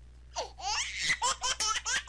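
A person laughing hard in quick, high-pitched bursts, starting about half a second in.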